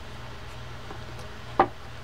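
Faint small clicks and scrapes of a screwdriver backing out the small screws that hold the lever-stop ring on a Shimano TLD 10 lever drag fishing reel, with one sharper click near the end, over a steady low hum.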